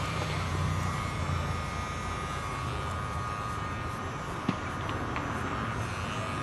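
Electric hair trimmer running steadily while shaving a man's head down to stubble, a constant hum with one brief click about four and a half seconds in.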